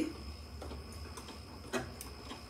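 Janome sewing machine stitching slowly with a fringe foot on an overlock stitch: the needle clicks about twice a second over a low motor hum.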